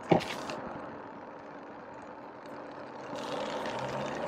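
Steady low hum of an idling car heard from inside the cabin, with a short voice sound at the very start and the outside hiss growing louder about three seconds in.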